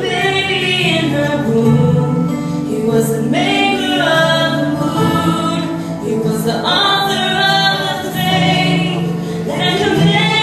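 A woman singing a slow gospel ballad solo into a handheld microphone, in long held phrases, over a sustained low accompaniment.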